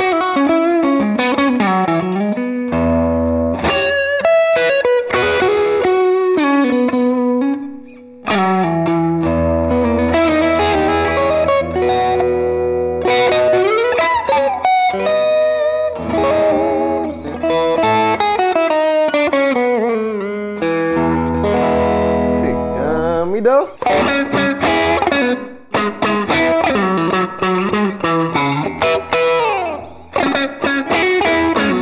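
Fena TL DLX90 electric guitar with Alnico 5 P90 pickups played through a crunchy, lightly overdriven tone: single-note lead phrases with string bends, broken by held chords with low notes ringing, and a brief break about eight seconds in.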